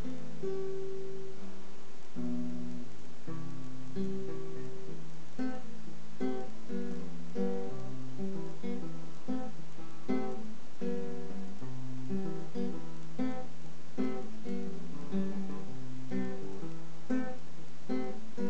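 Solo classical guitar with nylon strings playing a slow chord pattern; from about five seconds in the notes come quicker and more evenly spaced.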